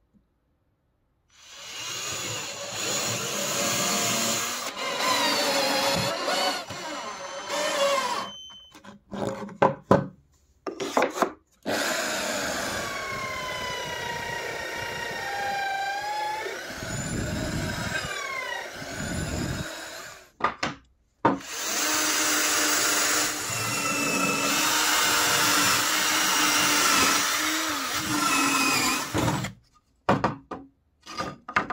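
Electric drill mounted in a homemade wooden drill press, boring into plywood in three runs of several seconds each. The motor's pitch dips and rises during the runs. Short knocks and clicks fall in the gaps between runs.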